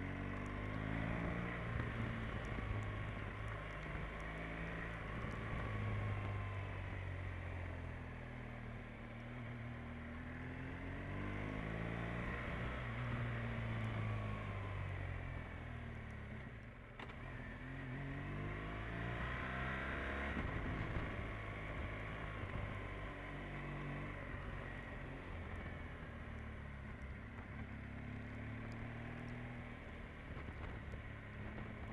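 Motorcycle engine as heard by its rider, the revs rising and falling again and again as it is ridden through the bends, with a brief lull a little past halfway.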